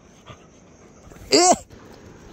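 A dog gives one short, loud, high-pitched yelp about a second and a half in, its pitch rising and then falling.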